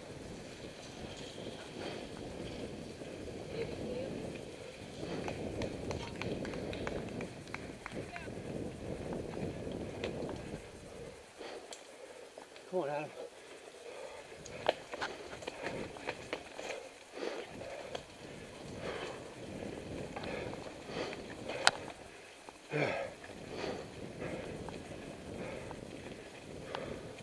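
Mountain bike riding fast down a dirt forest trail, heard from a camera mounted on the bike: a steady rush of wind and tyre noise, broken by sharp clicks and knocks as the bike goes over bumps, with the rider's heavy breathing.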